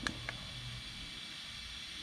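Low, steady hiss of room noise, with a faint click right at the start and another a moment later from the push buttons of a Spektrum Smart ESC Programmer V2 being pressed to change a setting.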